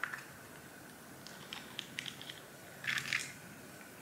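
Small handling noises: a few light clicks and ticks, then a short crackling crinkle about three seconds in, over a faint steady high hum.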